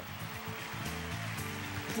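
Instrumental background music with held low chords that change in steps.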